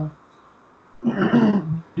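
A person clearing their throat once, a short loud burst about a second in.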